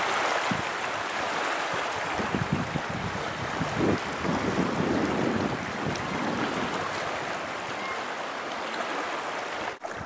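Small waves lapping on a gravel and rock lakeshore, a steady wash of water, with wind buffeting the microphone at times.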